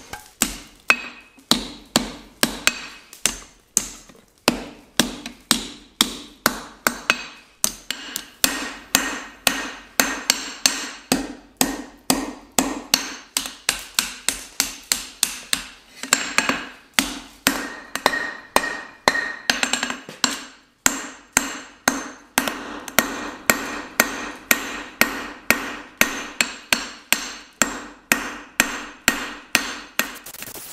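Hand hammer striking hot steel on an anvil, a steady run of blows about two to three a second with a few short pauses, the anvil ringing briefly after each blow.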